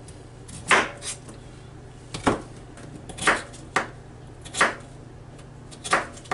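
Kitchen knife chopping raw potatoes into chunks on a flexible plastic cutting board: about seven sharp knocks of the blade on the board, unevenly spaced.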